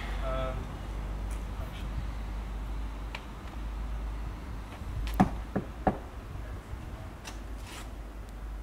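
Three sharp knocks on a wooden front door, about five seconds in, the first the loudest, over a steady low rumble.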